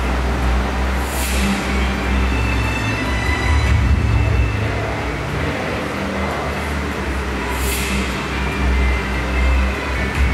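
A large group of students singing together in long held notes, with a heavy low hum underneath.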